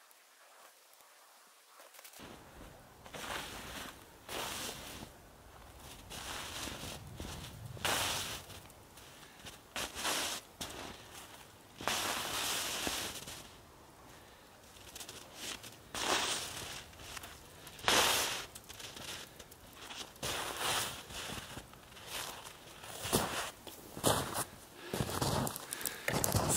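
Footsteps crunching through snow, mixed with dry dead spruce twigs cracking and rustling as they are broken off and carried. The first two seconds are nearly silent, then come irregular crunches and snaps a second or two apart, growing nearer and louder toward the end.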